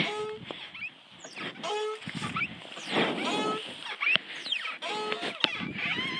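A girl laughing breathily over short, even-pitched squeaks that come about every second and a half, with a few light clicks, as an outdoor metal exercise machine with foot pedals is worked.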